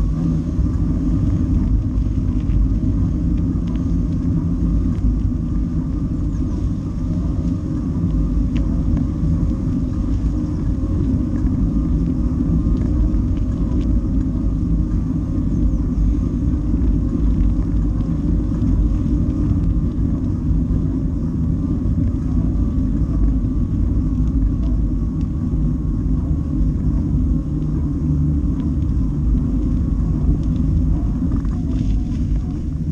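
Steady wind rumble on the camera microphone, with a faint hum of tyres rolling on a wet road, as a bicycle rides along.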